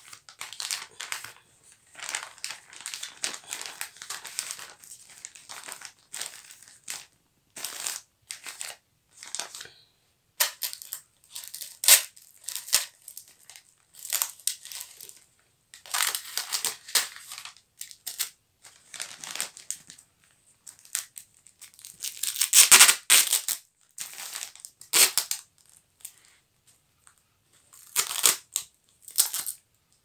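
Brown kraft wrapping paper crinkling and rustling in irregular bursts as a wrapped parcel is pressed flat and its folds smoothed by hand, loudest about three-quarters of the way through.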